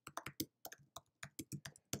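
Typing on a computer keyboard: a quick run of about fifteen keystrokes as a web address is typed into a browser's address bar.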